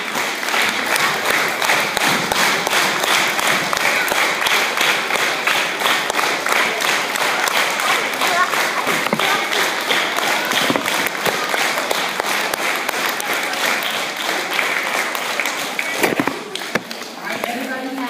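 A crowd of schoolchildren and adults applauding in a large hall, dying down about sixteen seconds in.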